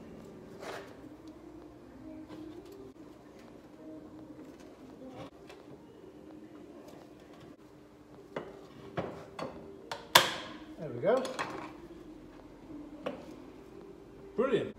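Metal clinks and knocks of steel brake-shoe clutch parts (shoes, springs and backing plate) being handled and fitted together by hand. A few sparse clicks come first, then a busier run of knocks from about eight seconds in, the loudest about ten seconds in.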